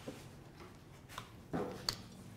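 Quiet handling of a hand-held wood router and a small metal part: a few faint clicks, then a sharp metallic click near the end.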